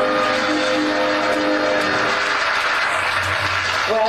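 Audience applause, a dense steady clatter, over held music chords that fade out about halfway through.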